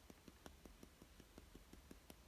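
Rapid, faint finger taps on the side of a static grass applicator's small hopper, about seven a second, knocking the grass fibres out because they don't shake out on their own.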